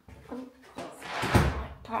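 A door being shut, with one loud, low thump a little over a second in.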